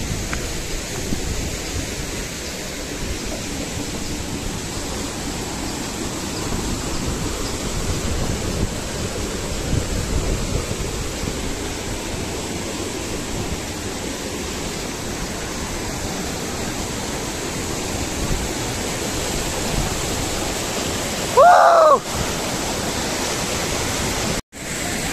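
Steady rush of a fast mountain stream tumbling over boulders, with one brief loud voice near the end.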